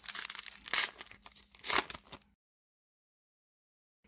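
Crinkling and rustling of a trading card pack's wrapper and cards being handled, with a few sharper crackles. It cuts off abruptly a little past halfway, leaving dead silence.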